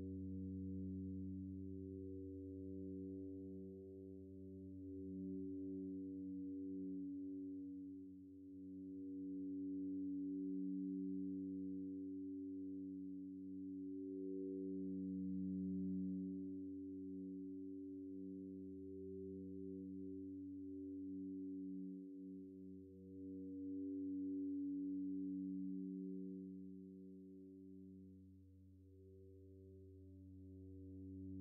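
A droning reverb-feedback patch on an Empress Zoia Euroburo: a reverb fed back into itself through EQ filters and sustained as a low cluster of steady pitched tones over a deep hum. It swells and fades slowly in loudness, dipping briefly three times.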